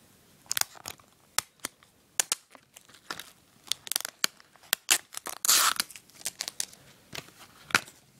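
Plastic wrapping on a Blu-ray case being picked at and torn off by hand: a string of sharp crackles and clicks, with one longer, louder rip about five and a half seconds in, and a sharp click near the end.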